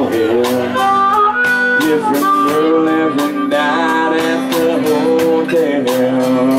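Live rock band playing an instrumental break: a steady drum beat under bass and guitar, with a sustained, gliding lead melody from fiddle and harmonica.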